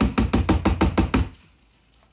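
Juicer's plastic pulp container knocked rapidly against a trash bin to shake out the pulp: about ten quick knocks in just over a second.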